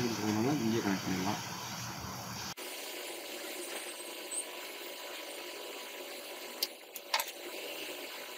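A voice briefly at the start, then faint steady room hiss with a few light clicks near the end from wires being handled at a small DC-DC converter circuit board.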